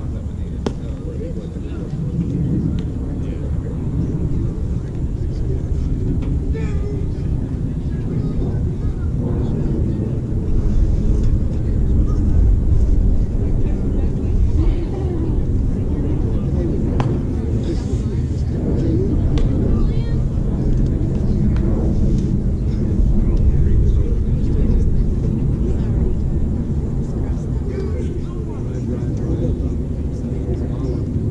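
Outdoor ballfield ambience: distant voices of players and spectators over a steady low rumble, with a single sharp pop about seventeen seconds in.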